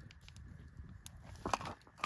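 Faint crackling of a wood campfire: a few sharp, isolated clicks and pops over a low hush.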